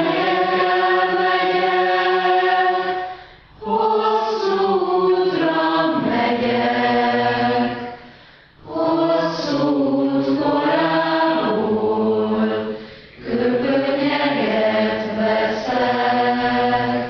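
A choir singing slow, sustained phrases about four seconds long, with a short break for breath between each phrase.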